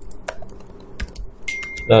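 Computer keyboard typing: a handful of separate keystrokes, spaced unevenly.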